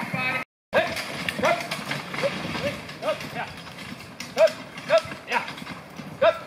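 Single-horse marathon carriage driving at speed on a dirt track: hoofbeats and the carriage's rattle, with short rising calls repeating roughly twice a second. The sound drops out for a moment about half a second in.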